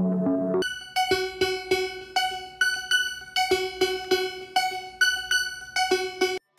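Synthesizer keyboard music: a low, soft chordal part gives way about half a second in to short, sharply struck synth notes, mostly one pitch repeated in an uneven rhythm of two or three notes a second.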